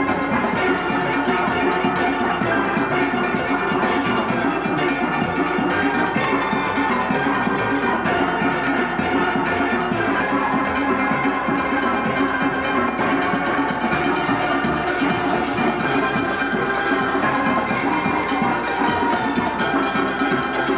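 A steel band playing: many steelpans struck in a fast, continuous rhythm, the ringing pitched notes of several pans layered together.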